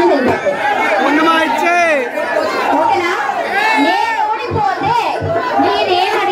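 Several voices talking over one another, with crowd chatter, in a large hall.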